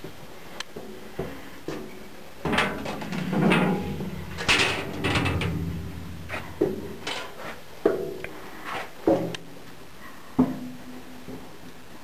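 Footsteps and knocks on steel inside an excavator's machinery house, with clanks and rattles of its sheet-metal doors and panels. A longer, louder stretch of clatter comes a few seconds in.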